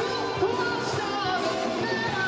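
Male voice singing a rock-opera song over live band accompaniment.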